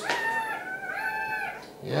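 Newborn puppies crying: two high, thin squeals, one at the start and another about a second in.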